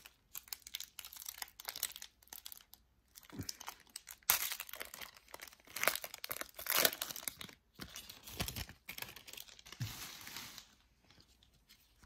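A foil trading-card pack wrapper being torn open and crinkled by gloved hands, with irregular crackling rustles. The loudest tears come about four and seven seconds in, and the sound fades to faint handling near the end.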